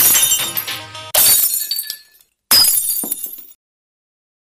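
DJ remix music breaks off into two sudden crash effects that sound like breaking glass, about a second and a half apart, each fading out within a second, and then the track stops.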